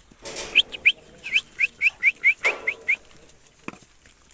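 A bird chirping in a quick run of about ten short, high calls, roughly four a second. Two brief rustling bursts come near the start and in the middle, and a single click comes near the end.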